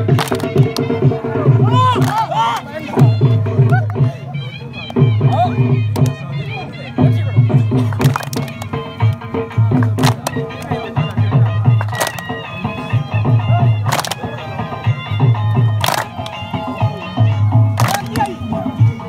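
Saraiki jhumar folk music with a steady deep drum beat under a melodic line. Loud sharp claps land together about every two seconds, from the dancers clapping on the beat.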